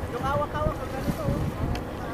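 Wind buffeting the microphone with a low rumble, over faint voices of people in the water calling out.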